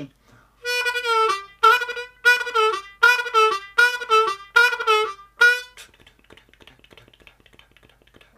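Diatonic harmonica in C repeating one note about eight times, each note dropping in pitch at its end like a bend, then stopping about two-thirds of the way through, followed by faint clicks.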